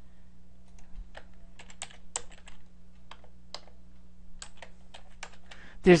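Computer keyboard typing: irregular key clicks in short spurts over a faint steady hum.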